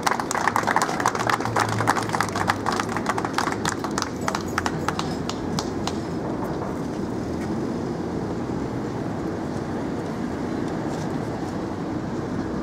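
Crowd applauding with scattered hand claps that thin out and fade over the first five seconds or so, leaving a steady outdoor hum of street traffic and murmuring onlookers.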